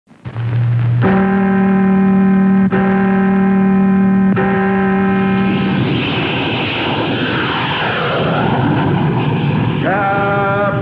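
Title sound effects: after a brief low tone, three long, sustained tones on one pitch sound about every second and a half, like a clock tolling midnight. From about six seconds in they give way to the steady noise of an airplane engine.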